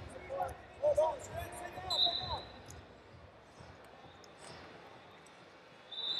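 Faint arena sound at a wrestling mat: distant shouting voices in the first couple of seconds with soft thumps, a short high whistle tone about two seconds in, then quieter hall noise.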